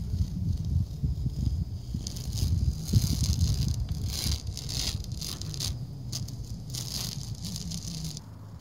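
Masking tape being peeled slowly off a narrowboat's painted hull, coming away in short runs of soft crackling from about two seconds in, over a low steady rumble.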